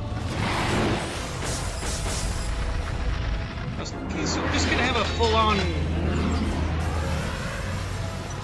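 Soundtrack of an animated fight scene: music under magic and blast sound effects, with a sweeping, wavering pitched sound about four to six seconds in.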